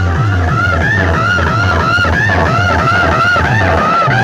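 Loud DJ music played through a large loudspeaker box system on test, with heavy repeating bass notes under a high, wavering lead melody.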